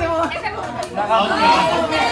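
Speech only: several people talking over one another, with a man's voice among them.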